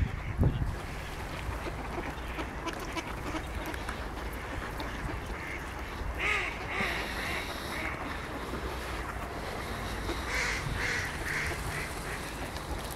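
Mallard ducks quacking in two short runs of several quacks each, about six seconds in and again near the end, over a low steady rumble.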